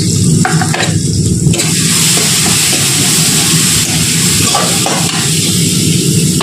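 Spices and paste frying in hot oil in a kadai, a steady sizzle that swells through the middle, with a few short knocks of the spoon or ladle against the pan.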